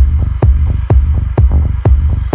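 Techno track stripped down to a steady four-on-the-floor kick drum, about two beats a second, over a low throbbing bass, with the hi-hats and high sounds dropped out.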